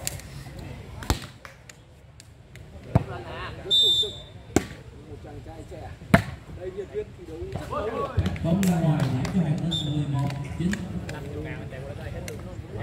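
A volleyball kicked back and forth during a foot-volleyball rally: four sharp thwacks spaced about one and a half to two seconds apart. Men's voices are heard in the second half.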